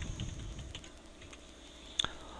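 Computer keyboard being typed on: a run of faint keystrokes as a date is entered into a spreadsheet cell, with a sharper key click near the end.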